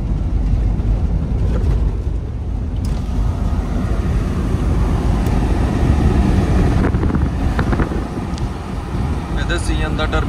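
Steady low rumble of a semi-truck driving on the highway, heard from inside the cab.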